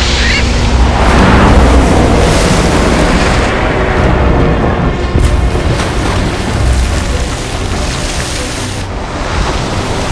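Heavy rushing splashes and deep booms of water as giant trevally lunge through the sea surface, loudest a second or two in, over dramatic background music.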